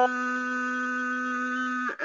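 A man reciting the Quran, holding one long vowel at a steady pitch for about two seconds: a drawn-out madd elongation in the Warsh reading. The note breaks off shortly before the end.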